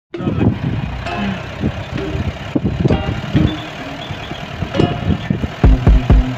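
A car driving along, heard from inside the cabin: a low running rumble with frequent knocks and rattles.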